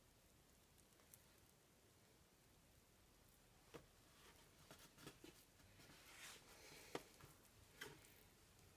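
Mostly near silence, then faint scattered soft taps and squishes from about halfway in as hands roll and press pieces of seitan dough and set them down on a metal cookie sheet.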